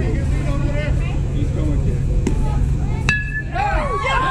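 An aluminium youth baseball bat hits a pitched ball about three seconds in: one sharp ping with a short ringing tone, over a steady low rumble and spectators' chatter. Spectators start yelling right after the hit.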